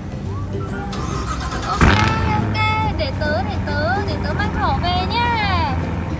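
Background music with edited-in sound effects: a sudden hit about two seconds in, then a run of warbling, sliding cartoon-like voice sounds without words.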